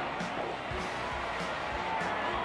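Background music under an even, steady hiss.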